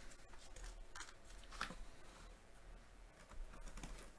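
Faint handling of cardboard packaging as a box is opened: a few soft scrapes, rustles and light taps, the most noticeable about a second and a half in and near the end.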